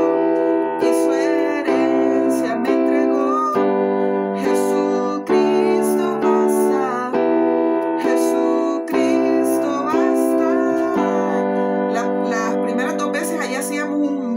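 Keyboard in a piano sound playing the closing bars of a worship-song chorus: chords struck about once a second and left to ring, with the last chord held for about four seconds near the end.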